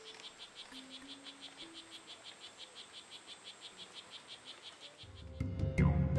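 A frog calling: an even series of short, high chirps, about five or six a second, over a faint, slow melody. Louder music comes in about five seconds in.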